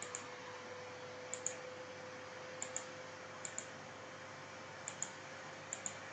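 Computer mouse button clicking: six quick double clicks, each a pair of sharp ticks, spaced about a second apart, over a faint steady hum.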